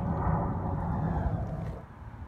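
Low, unpitched rumble of wind buffeting a handheld microphone outdoors, dropping away near the end.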